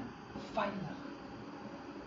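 A man's voice says a single word about half a second in, then a pause with only faint room hiss.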